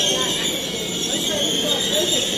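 Deutsche Bahn ICE high-speed train rolling slowly along the platform, a steady high-pitched squeal running over the rumble of its cars.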